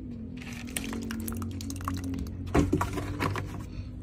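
Milk pouring from a plastic jug into a single-serve cereal cup of dry cereal, a steady stream that ends about two and a half seconds in.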